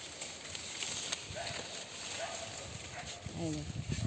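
Leafy branches of a potted tree being handled and pushed aside, rustling and knocking irregularly close to the microphone. A brief voice sounds near the end.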